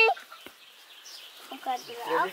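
Quiet outdoor background with a faint steady high tone, then faint voice-like calls near the end.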